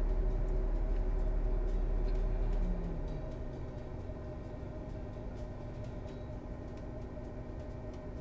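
A steady low motor-like hum with a few faint steady tones drops off about three seconds in, its pitch sliding down as it winds down. Faint rustles and light clicks come from cotton print fabric being smoothed and handled.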